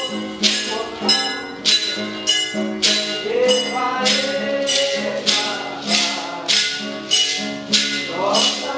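Live Afro-Brazilian song: beaded gourd shakers (xequerês) shaken in a steady beat of about two strokes a second, with a singing voice and a plucked small guitar underneath.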